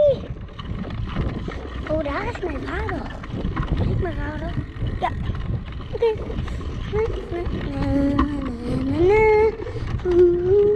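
A child humming and making wordless voice sounds that slide up and down in pitch, over a steady low rumble of wind and bike tyres rolling on brick paving, with a few knocks from bumps.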